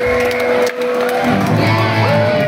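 Electric guitar and bass played live through the stage amps by a punk band: a held guitar tone with scattered drum or cymbal hits, and bass notes coming in about one and a half seconds in.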